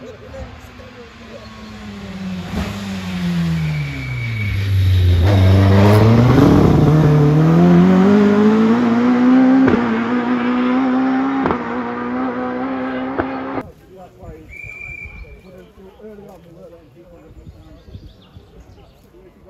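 A rally car's engine, its note falling as the car slows for the bend, then climbing steadily as it accelerates hard away. Two short cracks come during the acceleration. The engine sound cuts off abruptly a few seconds before the end.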